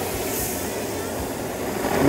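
Steady sizzling from a hot grill as liqueur is poured over chicken on a cedar plank.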